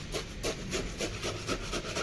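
A small hand tool scraping and working wet gravel-and-cement mix packed around a PVC pipe in a trench, in quick repeated strokes about four a second.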